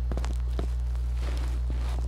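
A steady low hum with irregular light clicks and knocks over it, and a short stretch of hiss near the end.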